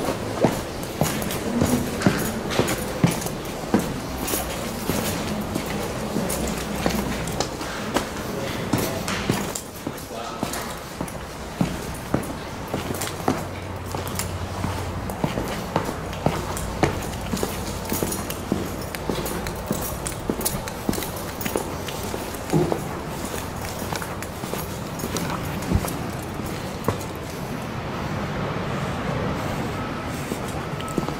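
Footsteps at a walking pace on concrete, with clicks from a handheld camera being carried, over a low steady hum.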